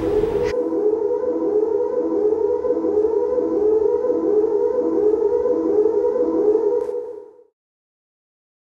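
A steady electronic tone with a rising sweep that repeats about every 0.7 s, like a siren. It fades out about seven seconds in.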